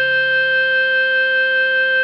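Clarinet holding one long, steady note (a written D on the B-flat clarinet, sounding concert C) over a low sustained backing chord; the note stops right at the end.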